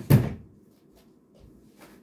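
A sharp knock at the start and a fainter one near the end, like something hard bumped or set down.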